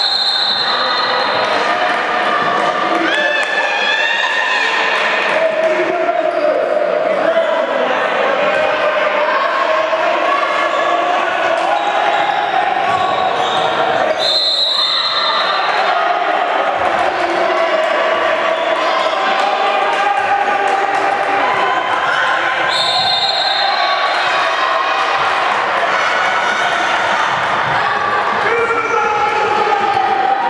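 A handball bouncing on the hardwood floor of a sports hall as players dribble during play, with voices echoing through the hall.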